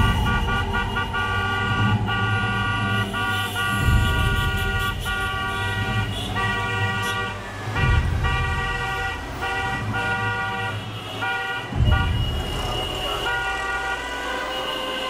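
Many car horns honking together in long, overlapping blasts from a moving convoy, with short breaks; a siren glides down faintly in the first few seconds.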